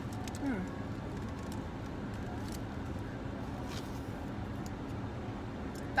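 Steady low hum of a car cabin while someone eats a breakfast sandwich: a short 'mm' of tasting about half a second in, then a few faint soft clicks of eating and wrapper handling.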